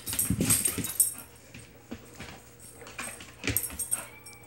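Pit bull making small noises up close, a cluster of short breathy, noisy sounds in the first second, then quieter with a few scattered clicks and rustles.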